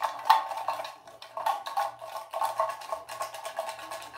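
Rolled paper raffle slips rattling as they are shaken in a clear cup: a rapid, irregular clatter of small knocks.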